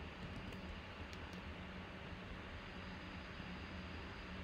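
Steady low hum with about four faint, short clicks of a computer mouse or keys in the first second and a half.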